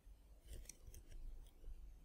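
Faint computer keyboard keystrokes: a quick cluster of clicks about half a second in, then a few scattered, softer taps.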